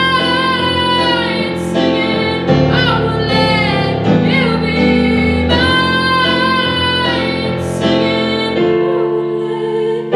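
A woman singing with full, held notes with vibrato, accompanying herself on a Yamaha digital keyboard. Near the end her voice goes soft and the keyboard chords carry on.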